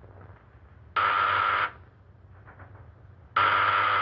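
An electric buzzer on a laboratory electrical apparatus sounding twice, each buzz steady and well under a second long, about two and a half seconds apart, as its key is pressed.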